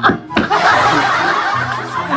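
Two men laughing together, a brief dip then a long burst of hearty laughter from about half a second in.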